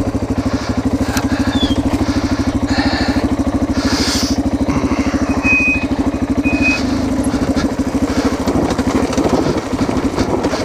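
Yamaha TTR230's single-cylinder four-stroke engine running at low revs with an even, rapid pulsing as the bike creeps over rocky ground. Two short high squeaks come near the middle.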